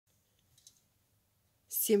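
Near silence broken by one faint click, then a woman starts speaking near the end.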